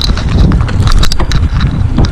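Mountain bike descending a rough forest trail: the chain and frame rattle and clack sharply and irregularly over bumps, under a heavy rumble of wind on the camera microphone.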